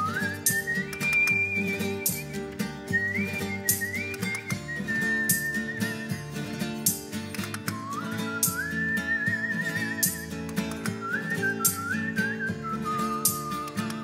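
A man whistling a folk melody with his lips, a single clear high line that glides between notes and wavers on its held notes, over acoustic guitar accompaniment.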